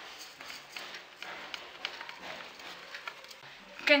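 Soft, irregular rustling and light taps of freshly steamed couscous being tipped from the steamer basket into a glazed clay dish and broken up by hand.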